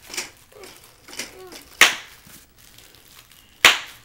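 Two sharp smacks, the first almost two seconds in and the second near the end, with faint voices in between.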